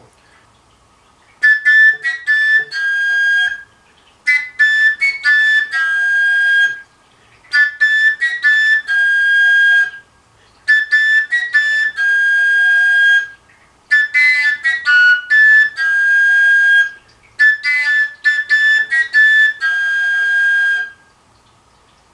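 Koncovka, a Slovak fingerless overtone flute, playing the same short phrase six times with a brief pause between each. Each phrase is a few quick tongued notes ending on a long held note, with the pitch set by breath force and by opening and closing the end of the pipe.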